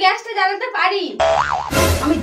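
A comic 'boing' sound effect with a wobbling pitch comes in about a second in, after a woman's speech. It ends in a short, loud burst of noise near the end.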